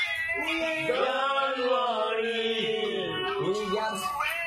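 A man singing loudly in long, wavering drawn-out notes that slide up and down in pitch, almost a wail.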